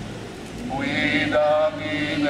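Voices singing an Italian devotional hymn with long held notes, a new sung line starting about two-thirds of a second in after a short pause.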